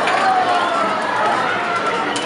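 Many overlapping voices chattering in a busy room, high-pitched children's voices among them; no single speaker stands out.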